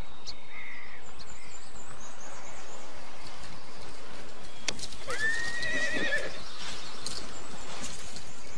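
A horse whinnying once, a quavering call of about a second that starts about five seconds in, just after a sharp click, over a steady noisy background.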